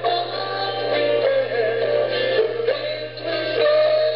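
A live rock band playing a song with a lead vocal over it, heard from the audience.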